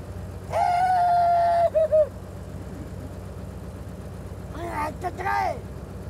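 A vintage open touring car's engine and running gear rumbling steadily as it drives. About half a second in, a loud, long held high note lasts about a second and is followed by two short ones. Brief voices come near the end.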